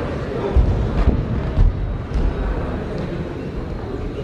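Ring noise during a savate bout in a sports hall: dull low thuds from the fighters' feet and kicks on the ring, several about half a second apart in the first two seconds. Indistinct voices from spectators and corners run underneath.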